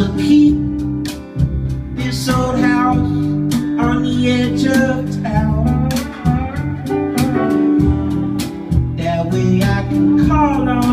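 Live band music: an acoustic guitar strummed to a steady beat, with pitched lines above it that glide up and down like a slide guitar.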